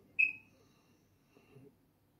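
A single short, high-pitched chirp about a fifth of a second in, fading within a third of a second, over faint low room sounds.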